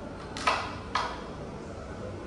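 Two sharp wooden clicks about half a second apart: a carrom striker knocking against the carrom men on the board.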